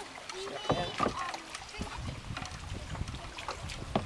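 Scattered knocks, bumps and creaks as a person climbs from a wooden dock into a kayak held steady by a dock-mounted stabilizer arm, with a low rumble of handling.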